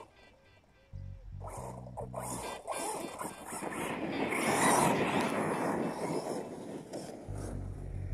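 Background music with a bass line starts about a second in. Over it, a brushless-powered RC monster truck passes close by: a noisy rush of electric motor and tyres on dirt that swells to a peak near the middle and fades away.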